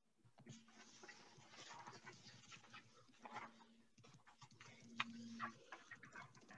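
Near silence: faint scattered clicks and rustling, with a faint low hum that comes and goes three times.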